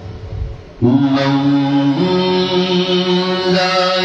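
A man's voice chanting a Pashto naat into a microphone. After a quieter first second it comes in loudly on a long held note, then steps up to a higher held note about halfway through.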